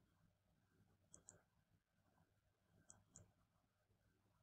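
Two faint double-clicks of a computer mouse, close to two seconds apart, in near silence.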